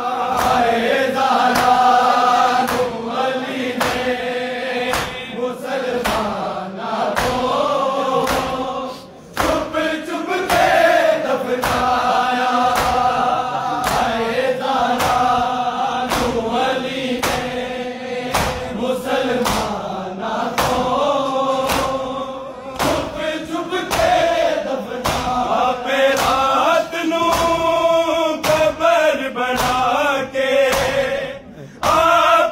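Men's voices chanting a Shia noha (lament) together, with a steady beat of open-handed slaps of matam (chest-beating) keeping time. The chant and beating dip briefly about nine seconds in.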